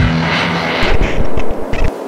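Intro music running into a loud rushing sound effect with several sharp hits, cut off just before the end and then fading.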